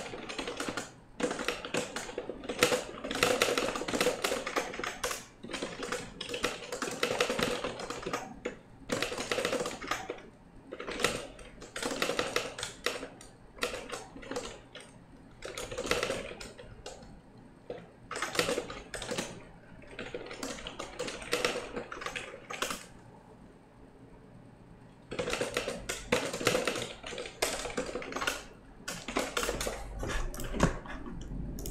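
Fast typing on a computer keyboard, in quick runs of keystrokes broken by short pauses, with a lull of a couple of seconds about three-quarters of the way through.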